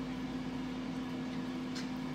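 Air fryer running at cooking heat: its fan gives a steady hum over a soft even hiss.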